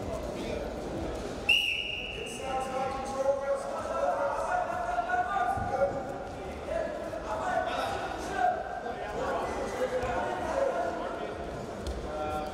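A referee's whistle blown once about a second and a half in, a short steady high note that restarts the wrestling bout. It is followed by shouting voices in a large hall and a few dull thuds of feet on the mat.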